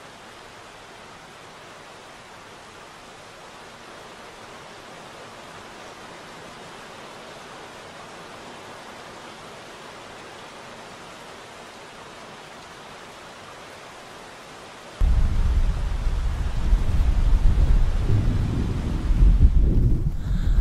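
Steady hiss of falling rain. About three-quarters of the way through, a loud, low, uneven rumble suddenly joins it and keeps going.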